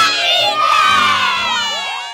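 A group of boys shouting and cheering together, many young voices overlapping, loudest at the start and fading away near the end.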